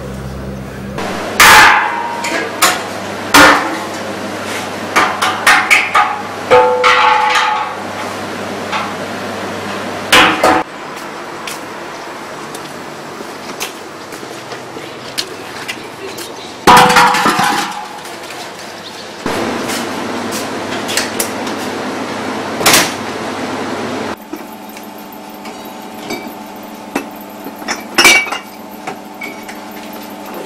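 A string of loud, irregular knocks and clanks of hard objects being handled and set down, some ringing briefly, with the loudest strikes about a second and a half in and again near the middle.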